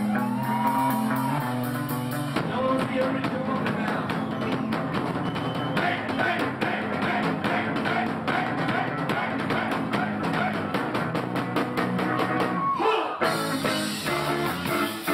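A ska band playing live on stage at full volume. Held chords open the first couple of seconds, then drums and guitar kick in with a steady, driving beat, and the song shifts near the end.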